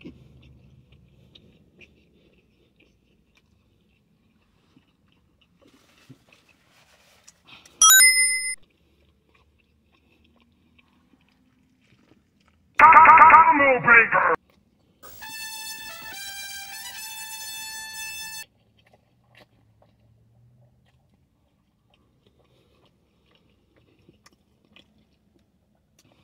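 Faint chewing of a mouthful of burger over near silence, broken by edited-in sound effects: a short high ding about eight seconds in, a loud brief pitched burst around thirteen seconds, and then a few seconds of held musical notes that step in pitch.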